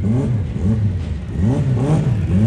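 Drag-race car engine at the starting line, revved up and down in quick short blips, about three a second.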